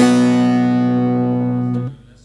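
Bağlama (long-necked Turkish saz) sounding the closing strummed chord of a folk song: struck once, its strings ringing on, then cut off abruptly near the end.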